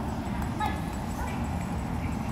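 Great Dane running across a rubber-matted floor, her paw falls faint under a steady low hall rumble, with a short faint voice about half a second in.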